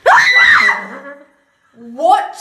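A woman screaming in fright: one loud shriek under a second long that rises and then falls in pitch. Her voice starts up again just before the end.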